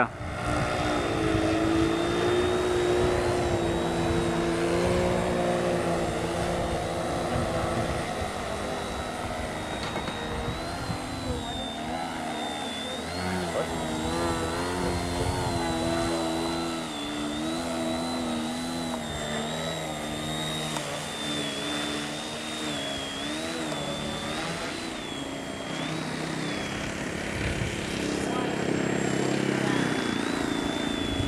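The small electric motor and propeller of a foam RC airplane buzzing in flight, with a high thin whine that rises and falls as the throttle changes, over a lower wavering hum.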